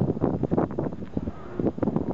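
Wind buffeting the camera microphone in uneven gusts.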